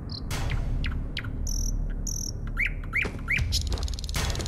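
A bird chirping: a high buzzy call in the middle, then three short chirps near the end, over a steady low rumble.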